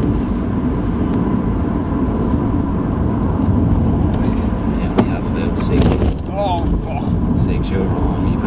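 Steady engine and tyre noise heard from inside a moving car on a wet road, with a sharp click about five seconds in.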